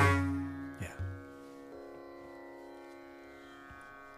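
A mridangam's last strokes ringing out and fading over about a second, with a couple of soft strokes about a second in. After that only the steady Carnatic shruti drone is left, held at one pitch.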